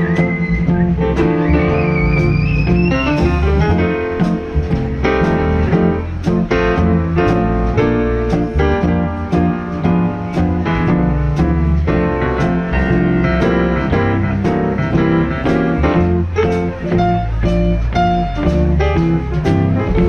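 Live jazz combo playing a swinging tune: a Bechstein grand piano carries the lead over walking double bass, guitar and a steady drum beat with cymbal hits.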